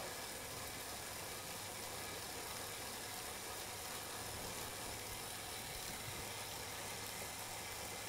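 Faint, steady whirring hum of a stationary bike trainer turning under a pedalling rider.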